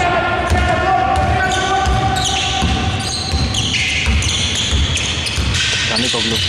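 Basketball dribbled on an indoor court, with repeated thumps of the ball, sneakers squeaking and players' voices. One voice holds a long call near the start, and the hall gives it all an echo.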